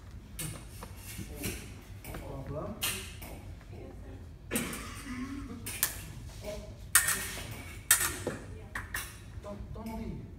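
Fencing blades striking each other in several sharp metallic clinks, the two loudest close together in the second half, with voices in the background.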